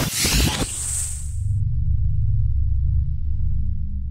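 Sound-design sting for an animated logo: a noisy whoosh with a high hiss that swells and cuts off after about a second and a half, settling into a steady deep bass drone.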